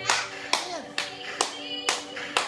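Hands clapping, four claps in about two seconds, over music with sustained notes, and a brief sliding vocal sound in the middle.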